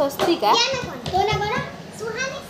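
Young children's high-pitched voices, talking and calling out in play.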